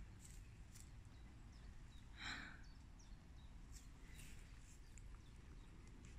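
Near silence: faint outdoor ambience with a steady low rumble, and one faint short sound about two seconds in.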